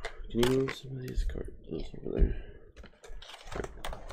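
Irregular clicks, taps and crackles of a clear plastic blister tray from a Pokémon card premium collection box as it is handled and pried open.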